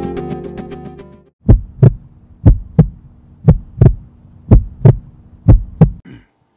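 Music fades out over the first second, then a heartbeat sound effect: five double thumps, about one a second, over a faint steady hum.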